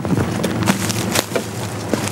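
Several sharp knocks and clatters from soldiers climbing out of the rear of a military vehicle and moving their gear, over a steady low rumble.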